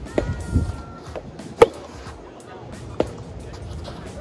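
Soft tennis rally: the rubber soft-tennis ball struck by rackets three times, sharp pops about one and a half seconds apart, the middle one loudest.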